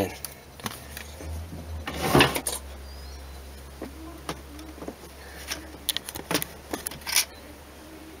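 Scattered light clicks and taps of small metal screwdriver bits and parts being handled in a plastic precision screwdriver set. There is a louder brief rustle about two seconds in and a run of clicks near the end, over a low steady hum.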